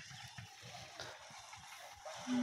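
Quiet outdoor background: a faint, uneven low rumble with a few faint, short bird chirps high above it.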